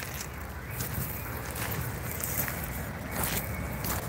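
Wind buffeting the phone's microphone as a steady low rumble, with a few crunching footsteps on the gravelly beach.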